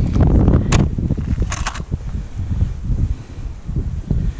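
Wind buffeting the microphone with a steady low rumble, broken by a sharp click just under a second in and a short rustle a little later while fishing line is handled by hand.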